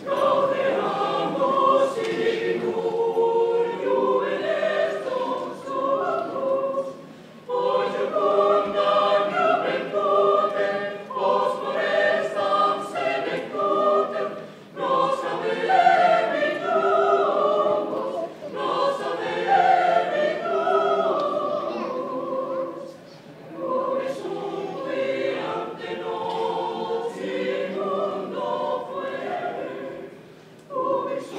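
Mixed choir of men and women singing together in sustained phrases, with short breaks between phrases about 7, 15 and 23 seconds in.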